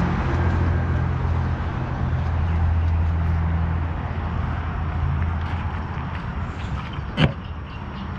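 A machine running with a steady low hum that fades over the last couple of seconds, and a single sharp knock about seven seconds in.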